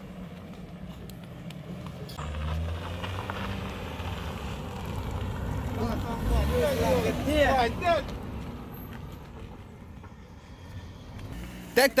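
A car's engine drawing near and passing at low speed, louder from about two seconds in, with raised voices over it in the middle.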